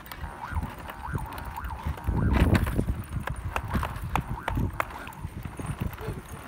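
Plastic baby walker rolling over concrete, its wheels clattering and clicking, loudest a couple of seconds in. Its electronic toy tray plays short repeated beeping tones.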